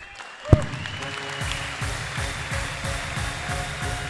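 A sudden loud thump about half a second in, then a congregation applauding over music with held notes.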